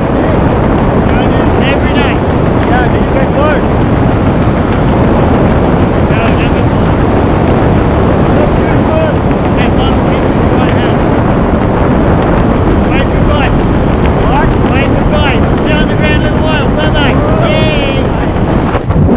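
Steady, loud wind noise from the airflow over a camera microphone under an open parachute canopy. Faint voices break through it now and then, more often near the end.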